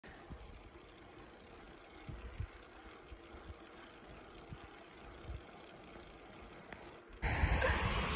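Faint low rumble with occasional soft bumps from a bicycle rolling along an asphalt path. About seven seconds in, a sudden loud rush of wind on the microphone takes over.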